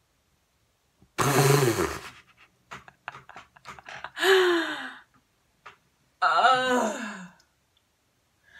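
A young woman's wordless vocal outbursts: a loud exclamation about a second in, a laugh at about four seconds, and a longer wavering cry at about six seconds. Each falls in pitch.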